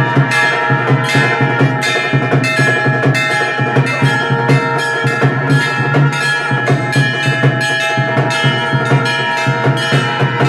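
Temple bells ringing continuously with steady, evenly spaced percussion strokes, the sound of an aarti lamp offering in progress.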